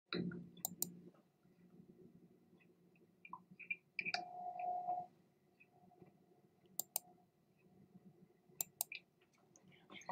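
A few faint, scattered clicks and small knocks, with a short steady tone about four seconds in.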